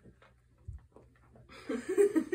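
Faint clicks as a small dog finishes chewing a treat, with a soft low thump a little under a second in; then a woman laughs near the end.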